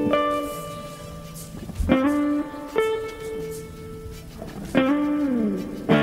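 Electric guitars playing the opening of a rock song: chords picked and left to ring, struck about every one to two seconds, with notes sliding down in pitch near the end.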